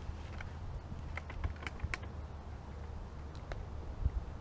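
Footsteps through dry leaves and brush: scattered light crackles and snaps over a steady low rumble.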